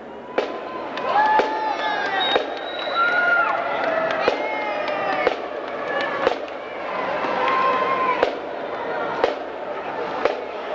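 Marching drumline keeping time between cadences: a single sharp drum crack about once a second, with spectators' voices between the hits.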